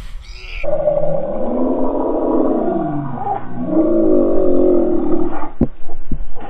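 A long, pitched roar-like sound that slides down and then up in pitch over several seconds, laid over the footage as a sound effect. A sharp click comes near the end.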